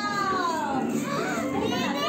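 A young girl's high, drawn-out excited exclamation, its pitch rising and then falling over about a second, followed by a shorter voiced sound.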